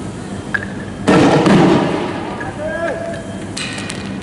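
A single loud explosive bang about a second in, dying away over about a second, from a riot-control round going off in the street. A few faint shouts and sharp clicks follow.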